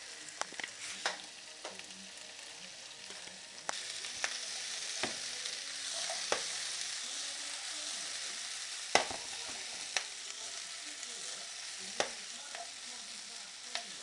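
Chunks of potato, carrot and onion sizzling in hot oil in a frying pan, the sizzle growing louder about four seconds in. Scattered sharp knocks come as the pan is tossed and shaken on the hob.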